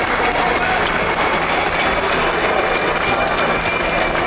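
Audience applauding steadily around the ring after a fighter's knockdown, with voices calling out in the mix.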